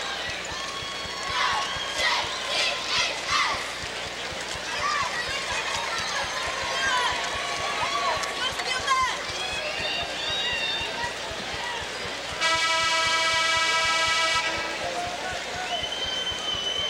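Basketball arena noise of crowd voices and shouts. About twelve seconds in, the arena horn sounds one steady, loud blast of about two seconds, ending the break between quarters.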